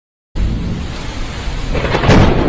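Thunderstorm sound effect: a deep rumble with a rain-like hiss that starts suddenly out of silence about a third of a second in and swells near the end.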